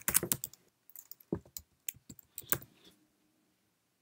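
Typing on a computer keyboard: a quick run of keystrokes at first, then a few scattered keystrokes that stop before the end.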